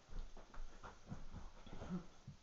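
A few soft, irregular footsteps and thuds as a person walks over and sits down on a couch.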